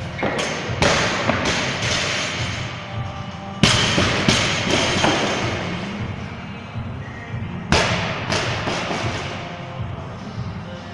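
Loaded barbells with bumper plates dropped onto the gym floor after squat cleans. There are several heavy thuds, each followed by a ringing smear, the loudest about three and a half and seven and a half seconds in, over background music.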